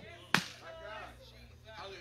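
A single sharp smack about a third of a second in, then faint murmuring voices.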